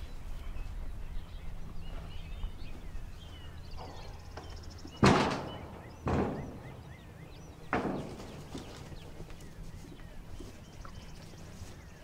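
Sheep being caught in a small pen, with three sharp knocks about five, six and eight seconds in, the first the loudest, over a low steady rumble.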